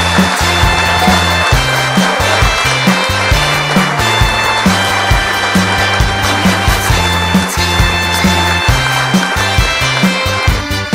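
Instrumental interlude of a Korean trot song played by a band: drums keep a steady beat under a moving bass line, with horns carrying the melody.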